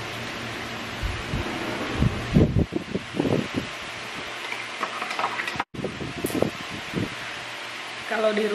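Steady fan-like hiss of a kitchen's room noise, with scattered soft knocks and clinks of a spoon against a cup and tableware. The sound cuts out for an instant a little past the middle.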